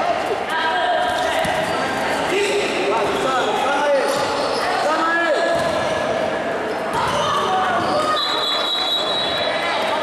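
Indoor futsal play in a reverberant hall: the ball being kicked, sneakers squeaking on the court floor in short chirps, and players calling out. A high steady tone sounds for just over a second near the end.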